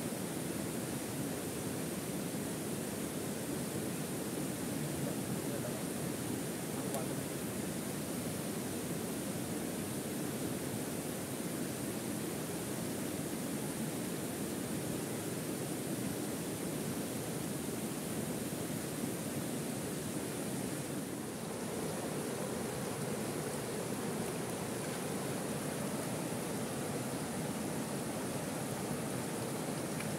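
Steady rush of flowing river water, an even noise with no breaks.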